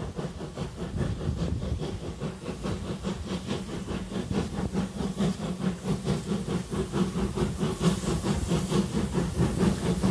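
Steam locomotive working towards the camera, its exhaust beats coming in a quick, even rhythm over a hissing rumble and growing louder as it nears.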